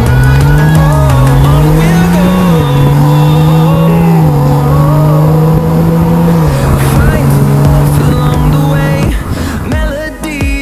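BMW 335i's twin-turbo inline-six engine running under way, loud and steady: its pitch climbs over the first couple of seconds, drops, then holds fairly level with a few small steps up and down, and it gives way near the end.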